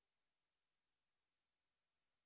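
Near silence: the audio track is essentially empty.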